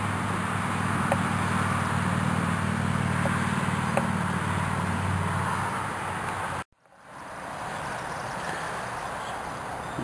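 Steady outdoor background noise with a low hum. It cuts out suddenly about two-thirds of the way through and comes back quieter.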